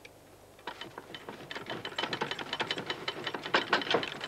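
A rapid run of mechanical clicks: sparse at first, then denser and louder through the second half.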